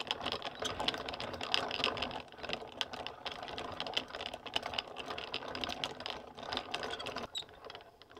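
Plastic yarn ball winder spinning as yarn winds onto it into a cake, its mechanism giving a fast, dense clatter of clicks. The clatter drops quieter about seven seconds in.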